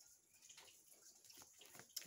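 Near silence: faint room tone with a few soft, scattered ticks.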